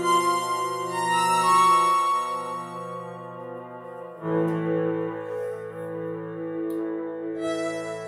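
Casio CT-640 electronic keyboard playing slow, sustained improvised chords with a melody line on top. The chord changes suddenly about four seconds in, and higher notes come in near the end.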